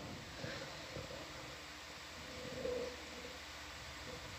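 Faint steady background hum and hiss of the comms audio, with one faint short murmur about two and a half seconds in.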